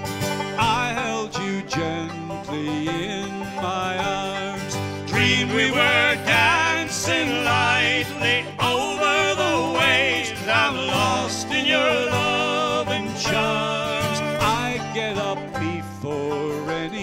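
Acoustic guitar and banjo playing a folk waltz in three-four time.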